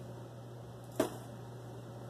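One sharp click about a second in as Lego bricks snap apart: the lightsaber blade breaking off, most likely from being gripped too hard.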